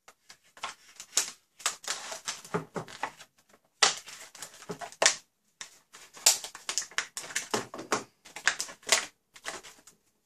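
Clear plastic blister packaging crackling and clicking as it is pried and pulled open by hand, in an irregular run of sharp crinkles with short pauses.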